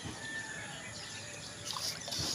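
Steady outdoor background noise with one faint, thin bird call lasting about half a second near the start.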